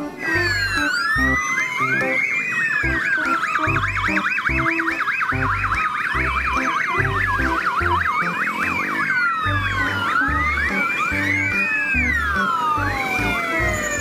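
Several fire engine sirens sounding at once, overlapping slow rising-and-falling wails and fast back-and-forth yelps. A steady low beat of background music runs underneath.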